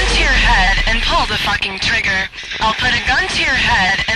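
A man's spoken voice sample with a thin, radio-like sound after the heavy metal music stops.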